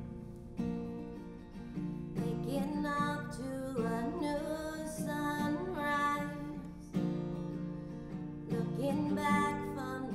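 Acoustic guitar strumming chords as a woman sings a slow worship song. Her voice comes in about two seconds in.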